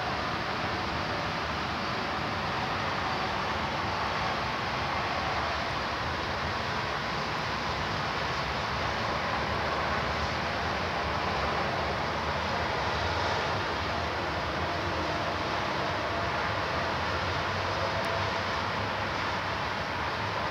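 Steady, even roar of distant city and motorway traffic heard from high above, picked up by a tablet's built-in microphone.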